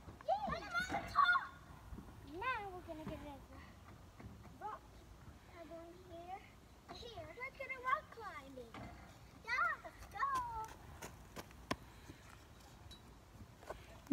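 Children's voices, short high calls and chatter off and on, with a few short knocks.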